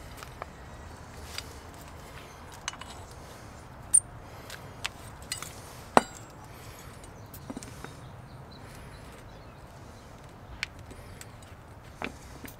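Light clicks and knocks of metal parts being handled as a greased guide bolt and rubber boot are fitted into a brake caliper carrier, with two sharper clicks about four and six seconds in.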